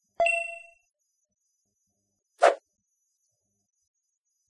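Sound effects for an on-screen like-and-follow badge: a bright, bell-like notification ding just after the start, ringing out over about half a second, then a single short pop about two and a half seconds in.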